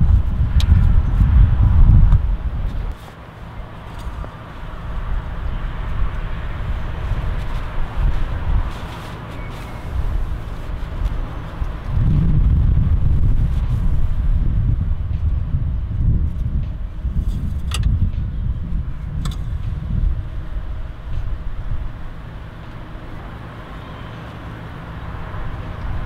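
A low, uneven outdoor rumble that is strongest in the first couple of seconds and swells again about halfway through, with a few faint clicks.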